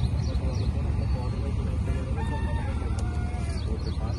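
A rooster crowing once, a drawn-out call about two seconds in, over a steady low rumble. High, quick chirps of a small bird repeat briefly at the start.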